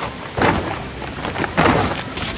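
Rustling of the handmade tent's sheet as it is pulled open, in two or three noisy bursts.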